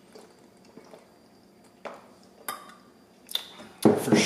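Someone drinking beer from a glass bottle, with a few faint clicks and gulps, then a sharp knock near the end as the glass bottle is set down on the table.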